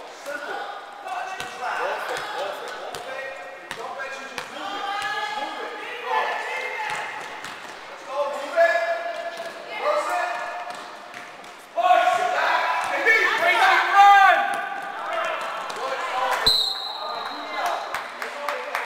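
Basketball game in a gym: voices of players and spectators calling out, with a ball bouncing on the court floor. The voices grow louder about two-thirds of the way in. Near the end a referee's whistle gives one short blast.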